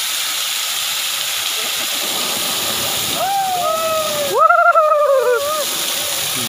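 Steady rush of a waterfall. About halfway through, a few high-pitched voices call out over it, overlapping, for about two seconds.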